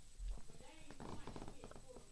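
Person gulping a drink from a plastic cup: a quick run of swallowing clicks and mouth noises, with a low thump just after the start.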